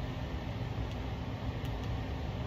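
Steady low background hum in a small room, with a few faint clicks near the middle and end as buttons are pressed on a small handheld timer.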